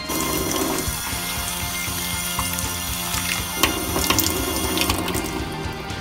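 Water running from a kitchen tap into a bowl, filling it, and easing off near the end, with background music underneath.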